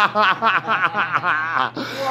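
A man laughing hard in a fast run of short ha-ha pulses, about six a second, easing off near the end.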